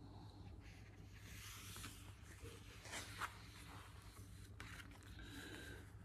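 Near silence: room tone with a faint low hum and a few faint paper rustles as a picture book's page is turned, the clearest about three seconds in.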